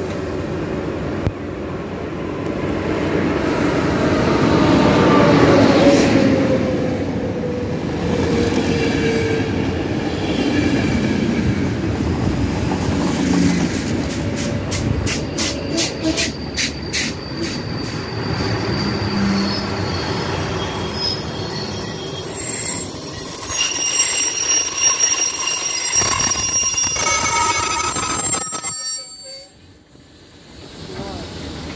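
ČD class 754 diesel-electric locomotive pulling a passenger train into the station: a loud diesel rumble that builds as the locomotive passes, then the coach wheels clicking over rail joints, then high brake squeal as the train slows to a stop near the end.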